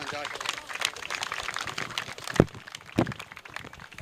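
A round of applause from a group of people clapping, with scattered voices, and two louder thumps near the end.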